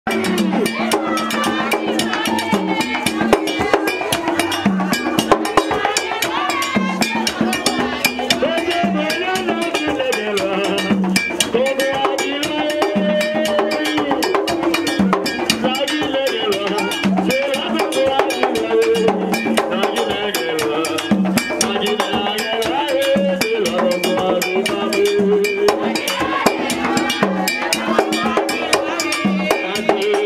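Vodou ceremonial drumming: hand drums and percussion keep a fast, steady rhythm while a man sings over it through a microphone and loudspeaker.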